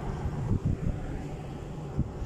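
Wind rumbling on a handheld phone's microphone outdoors: a steady low rumble with no clear sound above it, and a brief knock at the very end.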